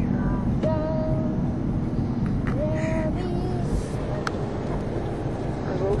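Steady low road and engine rumble inside a moving car's cabin, with a few short held voice tones over it.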